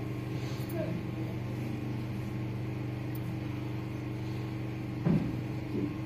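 Steady low machine hum made of several even tones, with a brief low thump about five seconds in.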